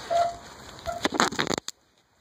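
Handling noise from a phone being turned over in the hand: a quick cluster of knocks and rubs about a second in, after which the sound cuts out abruptly.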